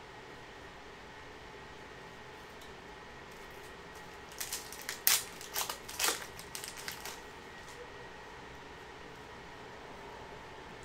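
Foil trading-card pack wrapper being torn open and crinkled by hand: a cluster of short crackling rips starting about four seconds in and lasting two to three seconds, over a faint steady hum.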